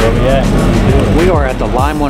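A man talking over background music with a steady low bass.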